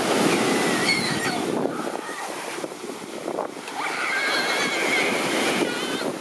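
Surf breaking on a beach, with wind buffeting the microphone, making a steady rushing noise. A faint wavering high-pitched tone rises above it briefly about a second in and again for the last two seconds.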